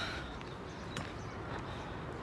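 Low, steady outdoor background noise with a single short click about halfway through.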